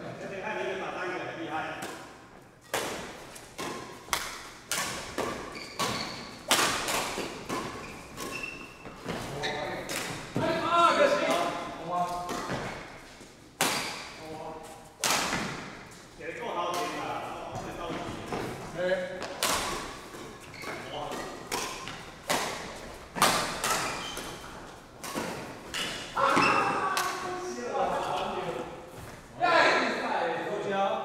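Badminton rackets striking a shuttlecock in a doubles rally: a string of sharp smacks, roughly one a second, ringing briefly in a large hall, with indistinct voices between the shots.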